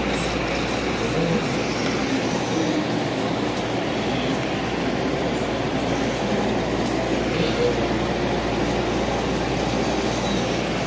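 Steady rumble of laundromat washers and dryers running.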